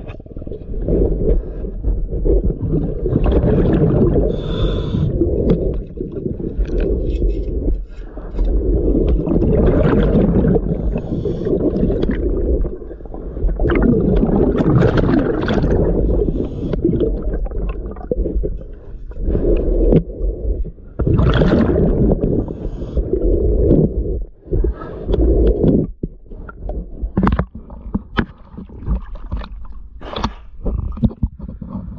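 Underwater sound of a scuba diver working along a sailboat hull: rumbling bursts of exhaled regulator bubbles every few seconds, with scraping against the hull. Sharper knocks and splashes in the last few seconds as the camera nears the surface.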